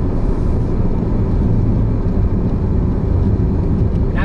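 Cabin noise of an Audi A6 with a 2.8-litre V6 cruising on the road: a steady low rumble of engine and tyres, heard from inside the car.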